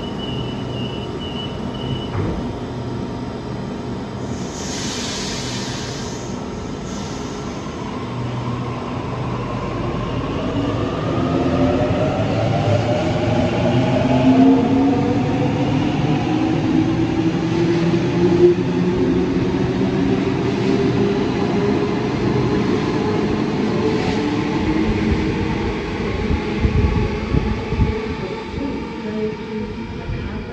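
Electric suburban train in an underground station: a faint repeated beep at the start and a short hiss about four seconds in. Then the traction motors' whine climbs steadily in pitch and grows louder as the train accelerates away. Rumbling knocks from the wheels and carriages come near the end.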